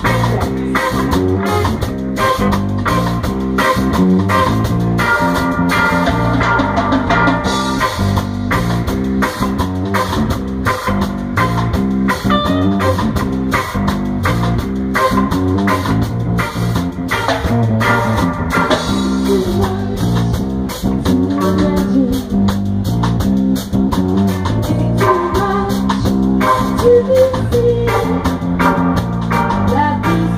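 Live reggae-ska band playing with a steady beat: electric bass, electric guitar and drum kit.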